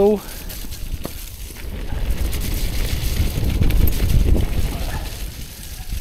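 Bicycle tyres rolling through wet mud and puddles on a trail, with wind buffeting the action camera's unshielded built-in microphones, building to its loudest about two thirds of the way through. A single sharp click about a second in.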